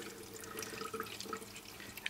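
Water poured in a thin stream into the plastic top reservoir of a Brita filter pitcher: a faint, steady trickle and splash.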